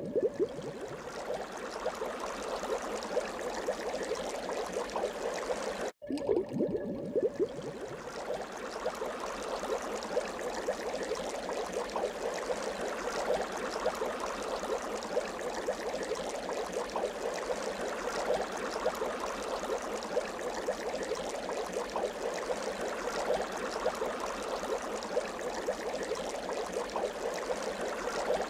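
Shallow woodland stream trickling and babbling steadily over its bed, with a brief break in the sound about six seconds in.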